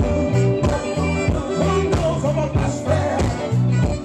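Live soul-blues band playing: a male singer over electric guitar, keyboard, horns and drums, with a steady bass line and beat.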